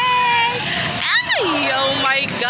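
Several voices shouting and calling out over a volleyball rally, with drawn-out held calls at the start and one long falling cry about a second in.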